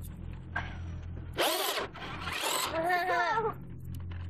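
A radio-controlled toy truck's electric motor whirring, with a child's high squeal about a second and a half in and more excited high-pitched vocal sounds near the end.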